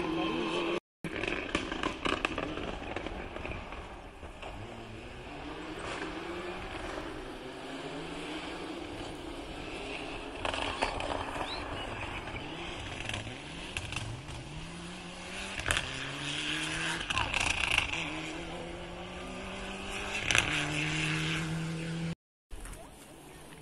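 Rally car engine revving hard through the gears on a gravel stage, the pitch climbing and dropping back again and again, with a few sharp cracks along the way; it gets louder in the second half.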